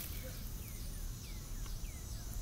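A small bird calling outdoors: a run of short, high chirps that each slide downward in pitch, over faint steady background noise.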